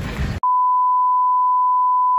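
Censor bleep: a steady, single-pitched electronic beep tone edited over speech. It cuts in about half a second in and holds on without change. Before it there is a moment of open-air background noise that stops abruptly.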